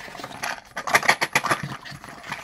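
Clear plastic packaging bag crinkling as it is handled, a run of irregular crackles and rustles.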